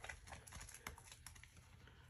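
A soaked sponge squeezed out over a sink of sudsy detergent water: the soapy water drizzles back into the foam with a quick run of faint crackles and squelches that die down after about a second.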